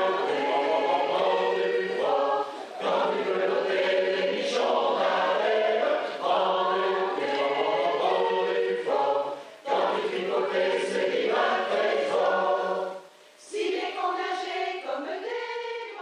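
A mixed choir of men and women singing together in held phrases of a few seconds each, with brief breaks for breath between them. Near the end the sound thins to fewer voices.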